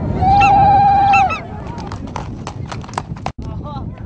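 Animal calls: a long, wavering, pitched call, then a run of sharp clicks mixed with short calls.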